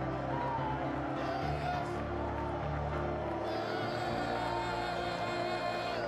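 Live worship music with sustained bass notes that change in steps, and a congregation's voices raised in praise over it.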